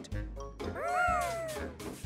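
A high, squeaky cartoon creature call that rises and then falls over about a second, over light background music with a soft low beat.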